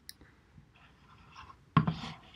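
Faint scratchy rustling in a small quiet room, then a single sharp knock near the end.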